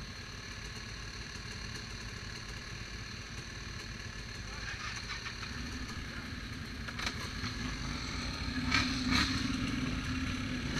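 ATV engine idling, then rising as the quad pulls forward from about halfway, with a few sharp knocks near the end.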